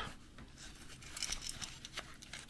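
Faint rustling of work gloves handling a metal wire mole trap, with a few light ticks of wire and metal.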